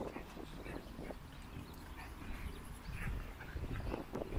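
A dog close to the microphone, moving and breathing, over a low rumble of wind on the microphone.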